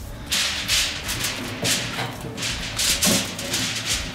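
Aluminium foil crinkling and rustling in a run of irregular crackly bursts as it is handled and pressed into place.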